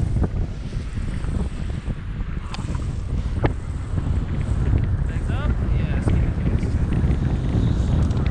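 Airflow buffeting the microphone of a tandem paramotor in flight, a heavy steady rumble with no clear engine note.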